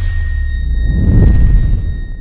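Cinematic intro sting: a deep bass boom that swells about a second in, with a few thin high tones ringing over it as it fades.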